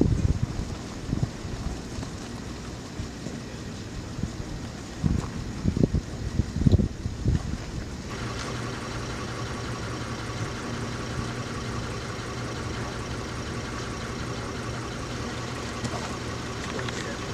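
Several low, dull thumps in the first half, then a steady engine hum from about halfway on that holds one constant pitch, like an idling engine.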